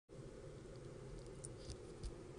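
Quiet car-cabin background: a faint steady low hum, with a couple of light clicks in the second half, like a phone being handled.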